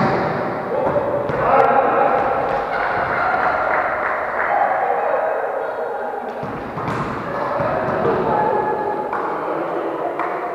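Volleyball players calling and shouting to each other in an echoing sports hall, with sharp thuds of the ball being hit or striking the floor at the start and again around seven seconds in.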